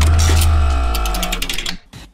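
Short musical transition sting: a deep bass hit with held tones and a fast run of ticking clicks over it, fading out near the end, followed by a few faint ticks.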